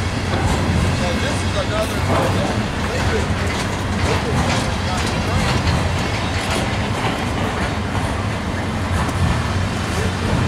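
Freight train cars rolling past at speed: a steady rumble of steel wheels on the rails, with scattered clicks and clacks from the wheels passing over the rail joints.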